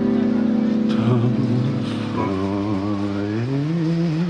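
Live rock band in an instrumental passage: a held chord rings on, then about two seconds in gives way to a single wavering tone that slides upward near the end and holds.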